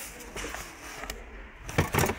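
Low background noise of a shop, with a few brief sharp handling noises close together just before the end.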